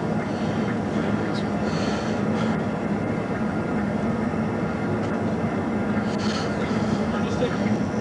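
Steady hum of an idling vehicle, with faint voices now and then.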